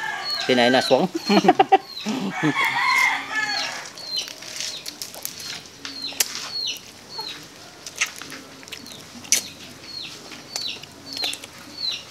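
Backyard chickens: short, high, falling peeps repeat every half second or so throughout, with a longer crowing call about two and a half seconds in. A person's voice is heard in the first two seconds.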